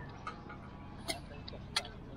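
Glass plates clinking together twice, two sharp bright clicks a little over half a second apart, as a stack of plates is handled.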